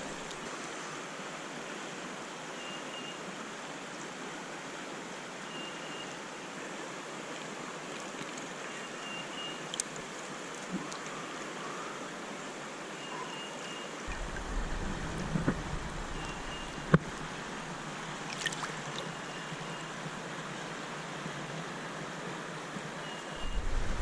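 Creek water flowing over a shallow stream bed, a steady rush, with a few light knocks and a low rumble in the second half.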